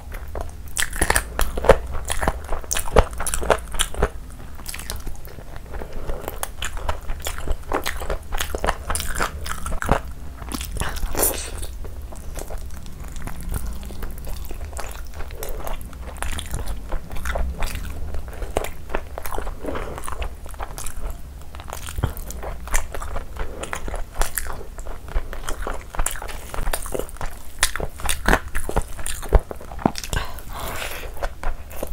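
Close-miked chewing and biting of chicken and biryani rice: a dense, irregular run of small mouth clicks and bites throughout.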